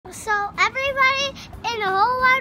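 A young child singing a short sing-song phrase in a high voice, with held notes and sliding pitch.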